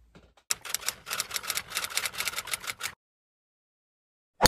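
Rapid, irregular clicking, about ten clicks a second, starting about half a second in and cutting off abruptly about three seconds in.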